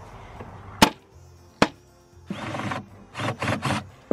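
Rubber mallet striking the plywood dividers of a wooden nesting box to knock them out: two sharp knocks less than a second apart, followed by two longer scraping noises as the wood is worked loose.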